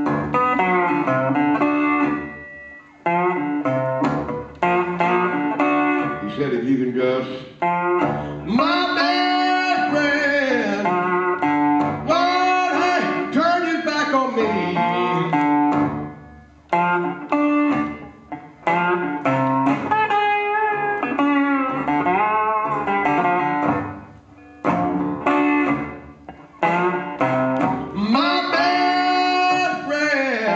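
Solo slide guitar played flat, lap-style, in a slow blues, with notes gliding up and down under the slide and ringing on. The phrases are broken by brief pauses, a few seconds in and again near the middle and about two-thirds through.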